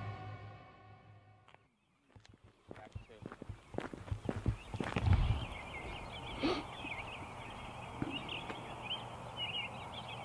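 The end of a music sting fades out, then after a moment's silence comes a quiet outdoor night ambience: scattered knocks and rustles of someone moving close to the microphone over a steady background of high, twittering chirps.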